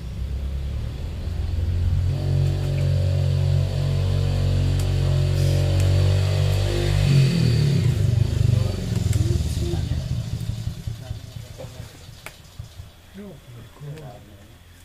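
A motor vehicle's engine running steadily, its pitch falling about seven seconds in as it fades away over the next few seconds. A few faint sharp clicks sound over it.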